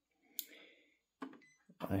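Brother HL-L6400DW laser printer control panel beeping once, short and high, as its touchscreen is tapped to open the Settings menu. A second, fainter click follows a little over a second in.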